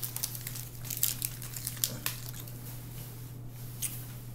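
Rustling and crackling close to the microphone, a scatter of short sharp clicks, as a hand handles something small right in front of it, over a steady low hum.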